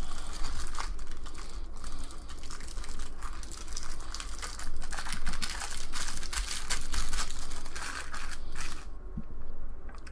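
Thin clear plastic bag crinkling as it is pulled and worked off a small vape tank by hand, a dense run of crackles that dies away near the end.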